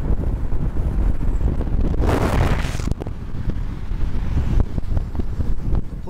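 Wind buffeting the microphone over the steady low rumble of traffic on a highway, with a brief louder rush of hiss about two seconds in.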